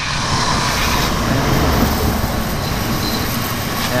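Pressure washer spraying a thin, hard jet of water onto concrete and the rear underside of a scooter, a steady hiss without pauses.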